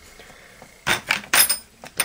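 Metal parts of a Mossberg 500 pump-action shotgun's receiver clicking and clinking as they are handled during reassembly. There are about five sharp clicks in quick succession in the second half, after a second of quiet.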